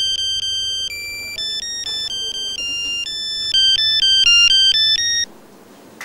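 Mobile phone ringtone: a quick electronic melody of beeping notes that plays for about five seconds and then stops suddenly.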